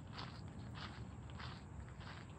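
Footsteps crunching on a gravel path, about two steps a second, over a low steady rumble.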